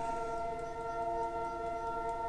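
Soft ambient background music, tuned to 432 Hz: several steady held tones forming a calm drone, much like a singing bowl.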